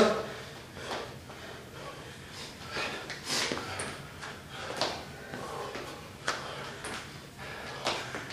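A man's feet landing and shuffling on a wooden floor during squat thrusts into lunges, with hard breaths between: faint, irregular thuds and exhales about a second apart.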